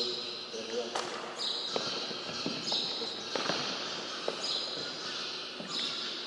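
A few footsteps and knocks on a gymnasium floor, over low, indistinct murmuring of people in a large hall.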